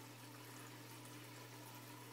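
Faint, steady hum and water trickle from a turtle tank's filter, close to room tone.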